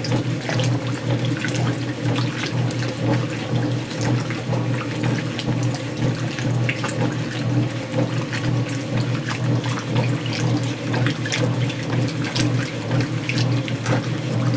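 Montgomery Ward wringer washer agitating clothes in a tub of water: a steady electric motor hum under continuous, irregular sloshing and splashing.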